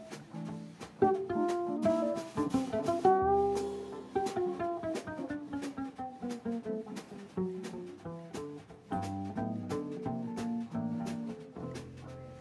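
Small jazz combo playing, a five-string cello carrying a melodic line with sliding notes over steady cymbal ticks from the drum kit and guitar accompaniment.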